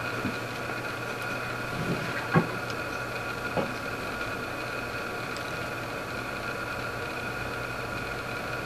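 Steady low electrical hum and hiss of background room tone, with a couple of faint small clicks a few seconds in.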